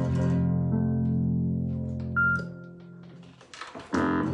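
Acoustic guitar and Nord Stage 3 keyboard holding a final chord that rings and fades. The low notes stop about two and a half seconds in, then a short high note sounds and a brief burst of sound comes near the end.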